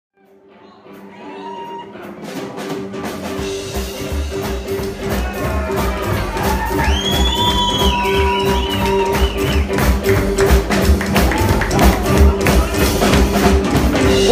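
Live rockabilly band playing an instrumental intro on double bass, drums and electric guitar, fading in from silence over the first few seconds.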